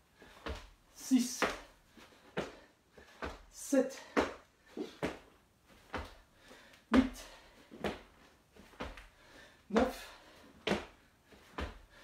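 Hands and sneakered feet thudding on a wooden floor during burpees, several short knocks per repetition as he drops to the floor, kicks back and jumps up, at about one rep every three seconds.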